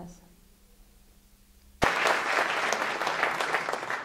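Near silence for almost two seconds, then an audience applauding, starting suddenly and carrying on steadily.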